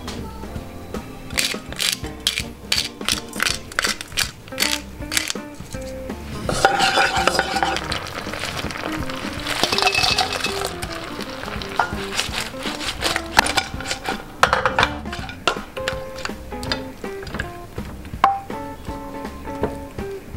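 Light background music with metal spoon and pan clinks. A sizzle rises for several seconds in the middle as fried shrimp are tipped into hot sauce in a frying pan and stirred.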